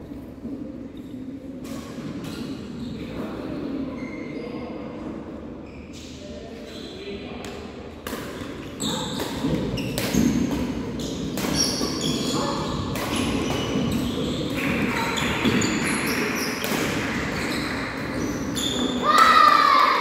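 Badminton doubles rally on a wooden court: repeated sharp racket strikes on the shuttlecock and players' footfalls, echoing in a large hall over a steady murmur of voices. The play grows busier and louder about eight seconds in.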